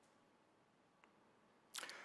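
Near silence: faint room tone, with a faint tick about halfway and a brief soft rush of noise near the end.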